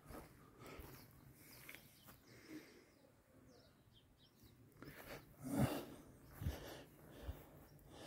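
Quiet outdoor ambience with faint bird chirps. About five and a half seconds in there is a brief, louder sound, then a couple of soft clicks.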